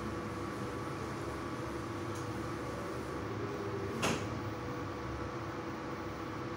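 Puris deep-frying in hot oil in a steel kadhai, a steady frying noise over a faint hum. About four seconds in there is one sharp metallic click, typical of the steel slotted spoon knocking against the pan.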